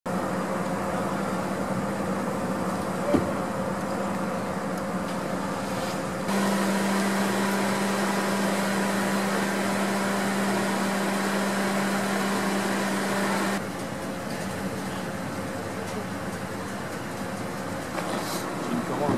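Steady mechanical hum with a low tone, of the idling-engine or ventilation kind. It steps up abruptly in level about six seconds in and drops back about fourteen seconds in, with a single sharp click about three seconds in.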